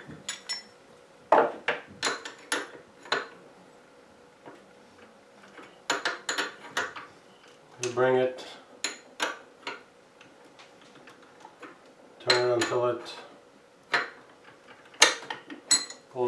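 Scattered metallic clicks and clinks of steel hand tools, a wrench and a locking pin, being handled against a mini mill's spindle head. Near the end a sharp click as the pin seats in the hole in the side of the spindle.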